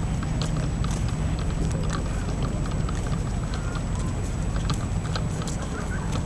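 Outdoor street ambience: a steady low rumble of wind buffeting the microphone, with irregular light clicks and faint short chirps over it.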